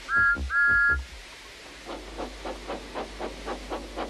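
Steam tank engine's whistle blowing two short toots, followed by a run of steam puffs, about five or six a second, as the engine pulls away.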